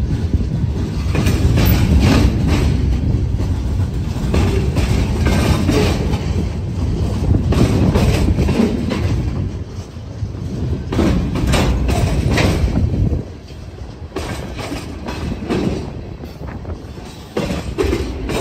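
Freight cars rolling past close by: a heavy rumble with repeated clacks of the wheels over the rail joints. It quietens for a few seconds about two-thirds of the way through, then picks up again near the end.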